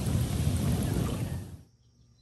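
Hot tub jets churning the water: a steady bubbling rush with a deep rumble, which cuts off abruptly about a second and a half in.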